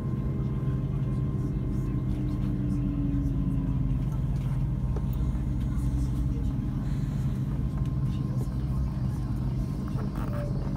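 Inside an LNER Class 801 Azuma electric train moving slowly along a platform: a steady low running hum with a faint whine that falls gently in pitch as the train slows.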